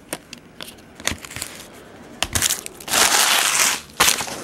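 Trading cards being shuffled, with light taps and clicks, then a loud crinkling of a foil card-pack wrapper lasting about a second near the end.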